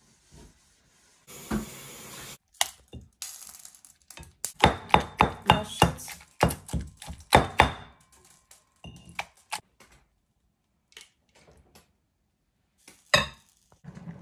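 Stone pestle pounding boiled eggplant in a stone mortar: a run of sharp knocks at about three a second, thinning out after about eight seconds.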